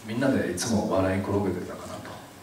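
Only speech: a man speaking Japanese into a handheld microphone.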